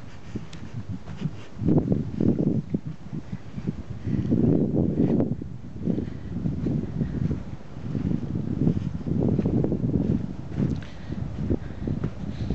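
Irregular low rumbling gusts of wind buffeting a handheld camera's microphone, mixed with handling and footstep noise as it is carried along a sandy beach. The rumble swells about two seconds in, again around four to five seconds, and again near the nine-second mark.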